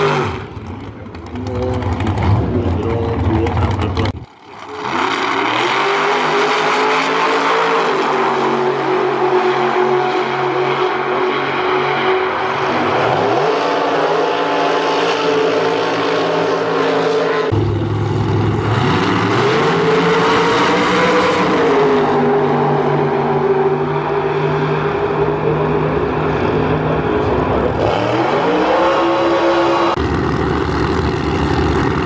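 Drag race car engine running hard at high revs during a tyre burnout, cut off abruptly about four seconds in. Then drag car engines running at idle, their pitch rising and falling each time they are revved up, several times over.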